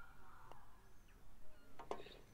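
Faint click of a putter striking a golf ball, then over a second later a short clatter as the ball hits the flagstick and drops into the cup.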